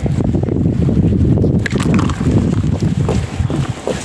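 Wind buffeting the microphone: a loud, uneven low rumble, with a brief sharp rustle about a second and a half in.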